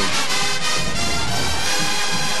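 A marching band's brass section playing a loud, steady tune in the stadium, heard over the broadcast.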